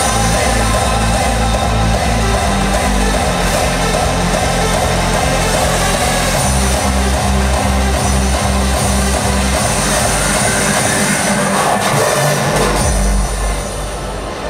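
Hardstyle dance music played loud through an arena PA, with a heavy kick drum on every beat. A rising sweep builds from about ten seconds in, and the sound drops away near the end.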